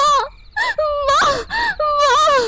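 A high-pitched voice wailing in a string of short cries, each bending and falling in pitch, one after another. They are cries of distress and pain.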